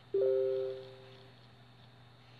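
A short two-note electronic notification chime: a lower note with a higher one sounding almost at once over it, both fading away within about a second.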